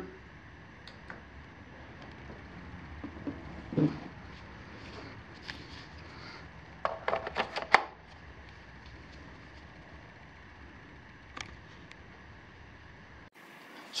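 Hard plastic clicks and knocks of a Kobalt 24-volt lithium-ion battery pack being pushed onto its charger and handled. There is a quick run of several clicks about seven seconds in, over faint steady room hum.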